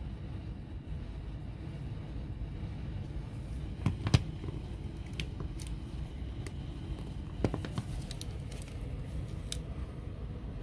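Handling noise from a pistol: a few light clicks and knocks as it is moved against a glass display case, the sharpest about four seconds in and near seven and a half seconds, over a steady low background hum.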